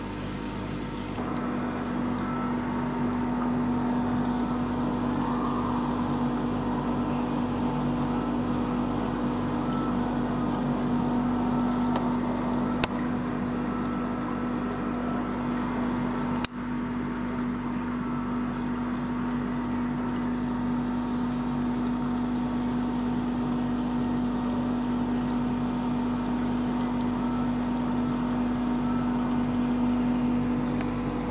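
Steady machine hum: a constant low drone with fainter steady tones above it, growing a little louder about a second in. About halfway through, two sharp clicks come a few seconds apart.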